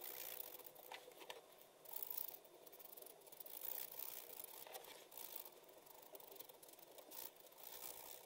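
Fine-tip POSCA paint marker rubbing across paper while filling in colour: a series of faint, scratchy strokes that come and go.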